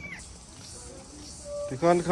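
Quiet background, then a person's voice starts speaking loudly near the end.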